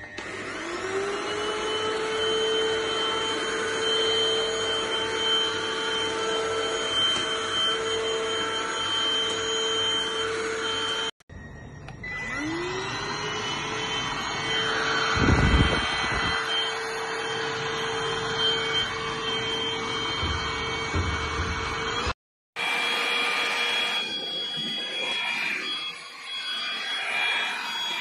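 A cordless stick vacuum cleaner's motor spins up with a rising whine and settles into a steady run. It does this twice, and each run is cut off abruptly. Near the end comes a noisier running sound without the clear whine.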